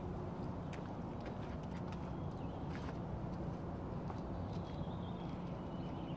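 Footsteps on asphalt: a handful of light, irregular clicks over a steady low background rumble.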